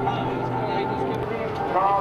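Indistinct voices over a steady low hum. Clearer speech-like voices come in near the end.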